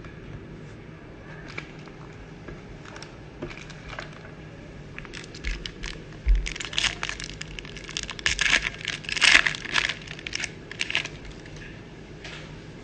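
A sealed trading-card pack's foil wrapper being torn open and crinkled. The first few seconds hold only scattered light clicks of handling; from about five seconds in comes a dense run of crackling tearing and crinkling that lasts until near the end.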